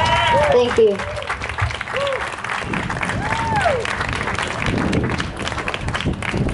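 Audience applauding and cheering at the end of a song. The band's last held notes die away about a second in, leaving clapping with a couple of rising-and-falling whoops from the crowd.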